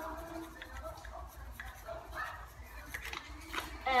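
Onion powder being shaken from a spice shaker over raw potato chunks on a metal baking tray: faint, soft shaking with a few light clicks.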